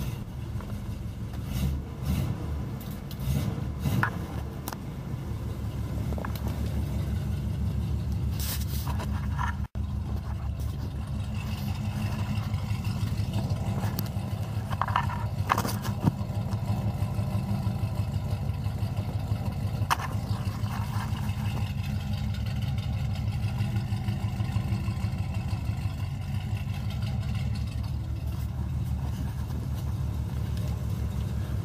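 Oldsmobile Rocket 350 V8 with dual exhaust, running with new cylinder heads. It is revved in a few short blips in the first seconds, then idles steadily.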